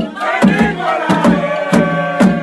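A crowd chanting and singing together over a tall hand drum beaten in a steady rhythm of about three strikes a second.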